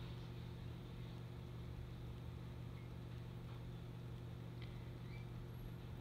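A steady low background hum, with a few faint small ticks from the needle and beads being handled about three to five seconds in.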